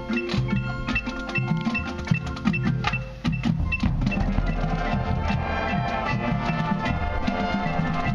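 Marching band music: the front ensemble plays struck, ringing notes on vibraphone and marimba, with drums underneath. About four seconds in, the brass come in with fuller sustained chords.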